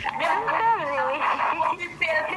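A woman's voice coming through a phone's speaker on a video call, high-pitched and wavering up and down in a whining, pleading way rather than in plain words.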